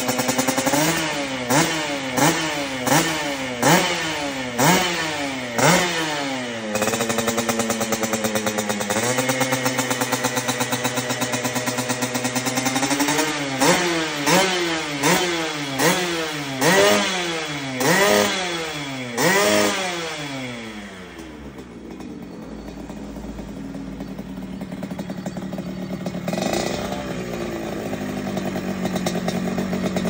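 Yamaha RX-King two-stroke single-cylinder engine through a stainless aftermarket exhaust, revved in quick repeated blips, held at a steady rev for about two seconds, then blipped again. For the last third it settles to idle, with one small blip.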